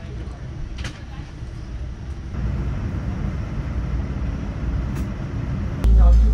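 Steady low rumble of an airliner cabin during pushback, stepping up in level about two seconds in, with a couple of faint clicks. Just before the end a much louder low sound cuts in suddenly.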